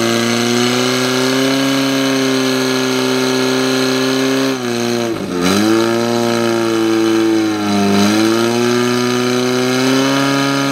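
Portable fire pump engine running at high revs while it drives water through the hoses to the nozzles. Its pitch dips sharply about five seconds in, and again briefly near eight seconds, each time climbing back.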